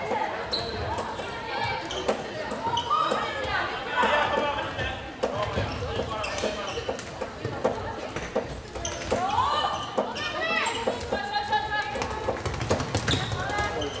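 Floorball play on an indoor court: repeated sharp clicks and knocks of plastic sticks striking the hollow plastic ball and each other, with players' voices calling out, loudest about two thirds of the way through.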